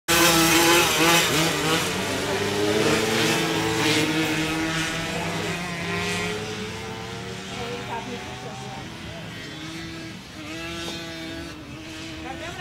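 Several small off-road racing engines revving and accelerating together, loud at first and then fading steadily as they move away.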